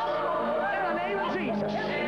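Many voices shouting and calling out at once, over background music with held notes.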